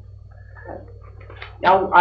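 A man's hesitant speech, a drawn-out "uh" and then "now", growing loud near the end, over a steady low hum on the old videotape recording.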